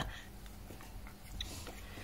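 Faint handling of paper, vellum and card: a few soft rustles and small ticks over a low hum.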